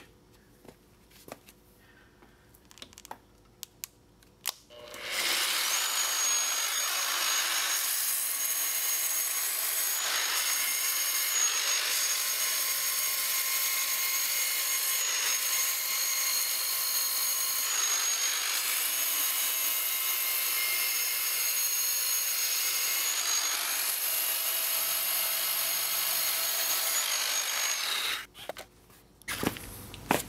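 A handheld electric tube belt sander starts about five seconds in and runs steadily with a high motor whine, its sanding belt wrapped around a chrome-plated steel axle, sanding through the chrome. It stops shortly before the end, after a few light clicks of handling.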